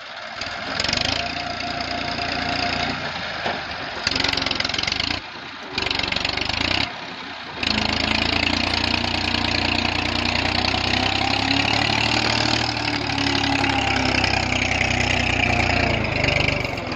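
Tractor diesel engine running, the tractor stuck in loose sand and working to drive out. The sound breaks off twice for a moment, then runs on loud and steady from about eight seconds in.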